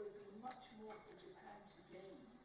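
Faint, indistinct speech, too quiet for words to be made out.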